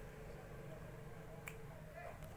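A single light click about one and a half seconds in, over a faint steady hum: a steel ruler being handled and released on the drawing paper.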